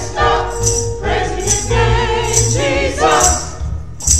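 Small church choir singing together, several voices holding notes in harmony, over a light high percussion beat about twice a second.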